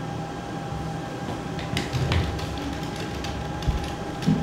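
Steady mechanical room hum with a thin steady whine running through it, a few light clicks and a soft low thump near the end.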